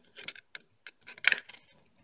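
Steel knife blade sliding into a snug-fitting plastic sheath: a run of small clicks and scrapes, loudest a little after halfway, then a few faint ticks.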